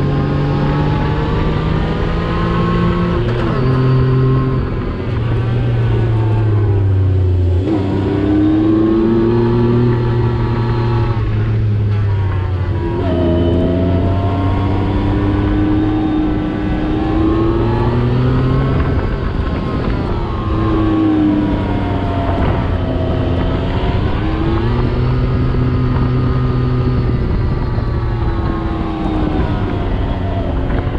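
Yamaha YXZ 1000R side-by-side's three-cylinder engine running under load on sand. The revs rise and fall repeatedly, with a few sudden drops in pitch.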